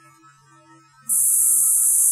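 A faint steady hum, then about a second in a loud, steady, high-pitched hiss switches on abruptly: the noise-like signal of a DRM digital radio transmission, which occupies only about 10 kHz of bandwidth.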